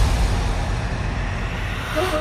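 Electronic dance music at a track transition in a big-room house mix: a deep bass rumble under a slowly fading wash of noise. A sustained synth chord comes in right at the end.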